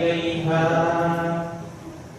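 A man reciting the Quran in melodic tajweed style, holding one long drawn-out phrase with slow pitch changes that trails off near the end.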